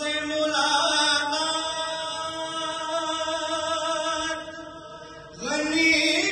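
A noha, a Shia mourning lament, chanted by a solo reciter in long drawn-out notes. The line dies away about five seconds in, and the next phrase comes in on a rising note just before the end.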